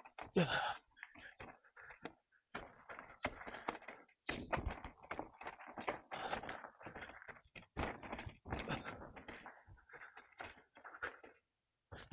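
Electric mountain bike rattling and knocking as it rolls over rough dirt trail, in uneven bursts of clatter with brief lulls.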